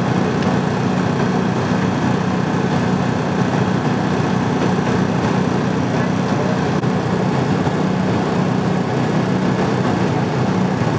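An engine idling steadily: a constant, unbroken drone with a low hum under it.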